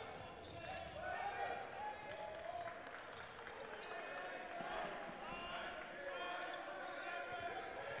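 Basketball being dribbled on a hardwood court, with players' and coaches' voices calling out across a sparsely filled arena.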